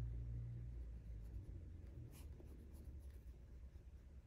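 Thin round brush stroking gouache paint onto paper, a soft scratchy rubbing, with one brief sharper scrape about halfway through. A low hum sits underneath, stronger in the first second.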